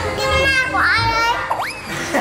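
A three-year-old girl's high-pitched voice exclaiming "Ơ!" in surprise, then speaking in Vietnamese.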